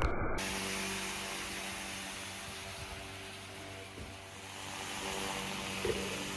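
Small electric motor driving the fan of a homemade paddy-cleaning machine, running with a steady low hum over a steady hiss of blown air and falling grain.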